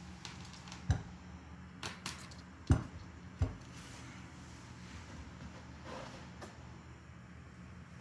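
Handling noise from unpacking a 3D printer: a handful of light knocks and clicks as parts are moved in the cardboard box and its foam inserts, mostly in the first half, over a low steady hum.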